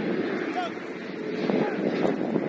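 Distant shouts and calls from footballers on the pitch, short and scattered, over a steady noisy background.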